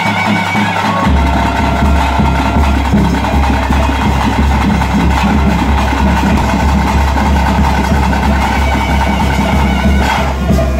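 Traditional ritual music: drums beating steadily, with held pipe-like tones above them; the beat enters about a second in.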